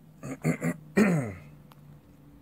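A man clearing his throat: three short bursts, then a longer voiced sound about a second in that falls in pitch.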